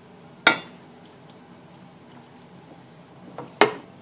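Two sharp knocks of cookware against a ceramic casserole dish, about three seconds apart, as the skillet and a wooden spatula hit the dish while the sausage and cabbage mixture is scraped in.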